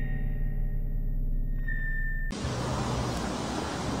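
Eerie background music of a sustained low drone with long held high tones, which cuts off abruptly a little past halfway into a steady rushing outdoor background noise.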